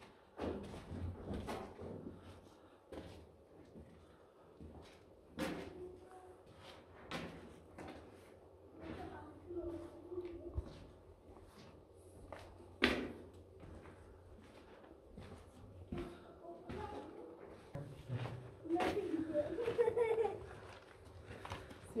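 Footsteps and scattered sharp knocks in a carved-rock tunnel, spread unevenly, the loudest a little past halfway, with faint low voices now and then.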